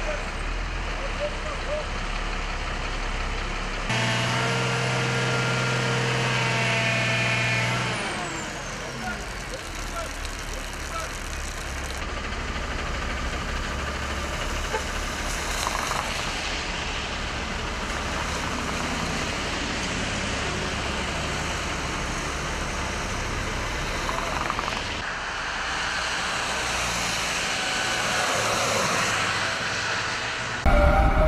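Traffic and heavy vehicles running on a wet highway, with a steady pitched tone for about four seconds a few seconds in that falls away as it ends.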